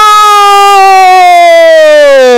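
A loud single siren wail that has just swept quickly up in pitch, holding and then slowly sinking in pitch before falling away.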